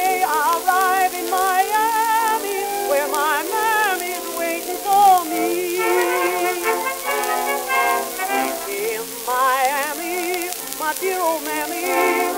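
An orchestra plays an instrumental passage on an acoustically recorded 1919 Columbia 78 rpm disc. The sound is thin, with almost no bass, and carries steady surface hiss and crackle from the shellac record.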